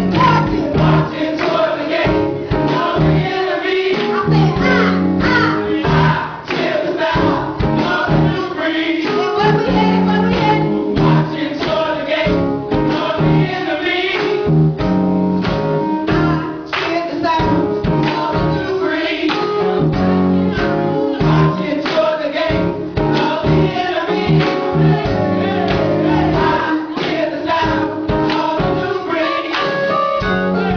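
Live gospel praise-and-worship music: a group of voices singing over instrumental backing with a steady beat, loud.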